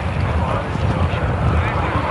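Wind buffeting the microphone in a heavy, uneven rumble, with indistinct voices in the background.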